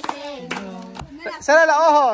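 A group clapping hands about twice a second along with children singing a short thank-you song, which ends about a second in. Then an adult's voice calls out loudly in a drawn-out, wavering tone.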